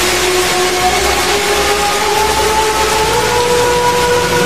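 Action-film soundtrack: a loud, steady rushing noise, with a few held musical tones beneath it that slowly rise in pitch.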